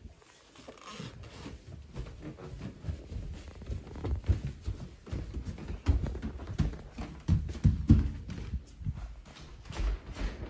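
Footsteps of people running across a hardwood floor: an irregular patter of low thuds, heavier from about halfway through, with rustling close to the microphone.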